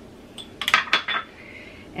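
Stainless steel mixing bowl struck by a handheld metal utensil: about five quick clinks in a row, then the bowl rings briefly with a high tone as it dies away.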